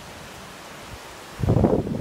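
Steady rush of flowing river water, then about one and a half seconds in, loud irregular wind buffeting on the phone's microphone that drowns it out.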